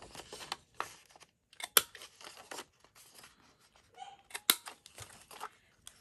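Handheld corner-rounder punch snapping through the corners of a sheet of patterned cardstock: several sharp clicks, the loudest a little under two seconds in and about four and a half seconds in, with paper rustling as the sheet is turned between punches.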